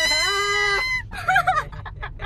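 A long, high-pitched cry that rises, holds one steady note for about a second and then drops, followed by a few short broken cries.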